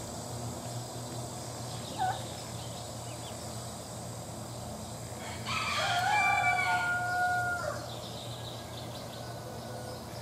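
A rooster crows once: one call of about two seconds, starting a little past halfway and the loudest sound here. A short single chirp sounds about two seconds in, over a steady low hum.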